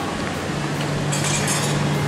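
Buffet dining-hall noise with china plates and cutlery clinking, over a steady low hum.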